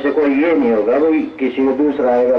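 Speech: a man talking.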